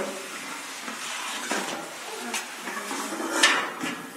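Clinks and light clatter of objects being picked up and moved aside, with a few sharp knocks, the loudest near the end.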